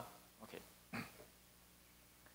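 Near silence: room tone, broken by two faint short sounds about half a second and a second in.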